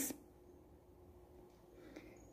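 Near silence: faint room tone, with the end of a spoken word at the very start.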